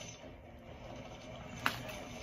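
Plastic water bottle being handled and opened: faint crackling, then a single sharp click about one and a half seconds in.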